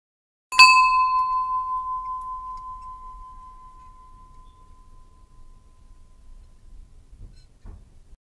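A meditation bell struck once, ringing with a clear high tone that fades slowly over about six seconds, marking the end of the meditation practice.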